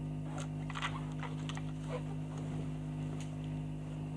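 Faint rustling and soft clicks as a man climbs onto a bed and stretches out on the bedspread, over a steady low hum in the old soundtrack.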